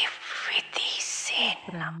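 Whispered, breathy speech with strong hissing s and sh sounds, giving way to ordinary voiced speech near the end.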